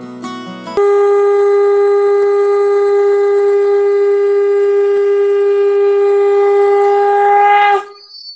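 A conch shell (shankha) blown in one long, loud, steady blast. It starts about a second in, holds one pitch for about seven seconds, then rises slightly and cuts off just before the end.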